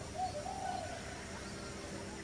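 A bird calling outdoors: a short low note and then a longer, wavering one, with a few faint higher chirps, over the last faint ring of the acoustic guitar's final chord.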